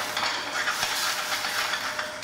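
Squid and shrimp sizzling in a stainless steel frying pan as a splash of cachaça burns off in flames, a steady hiss.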